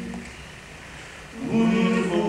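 Male vocal quartet singing in close harmony with accordion. A held chord stops at the start, there is a pause of about a second, then the voices slide up into a loud new sustained chord near the end.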